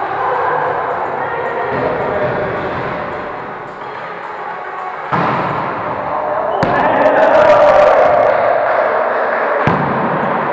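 A volleyball being struck by players' hands three times, sharp hits about five, six and a half and nine and a half seconds in, ringing in the gym hall, over players' voices.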